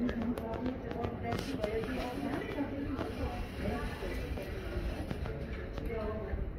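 Street ambience of indistinct voices from passersby talking, with scattered footstep clicks on the pavement.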